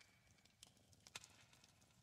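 Faint clicks and taps of tarot cards being handled and laid on a pile, with two sharper taps about half a second apart near the middle.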